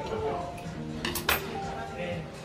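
Tableware clinking briefly a little after a second in, a quick cluster of sharp clicks, over steady background music with long held notes.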